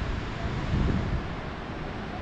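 Wind buffeting the microphone in an uneven low rumble, strongest a little under a second in, over a steady hiss of surf breaking on the beach.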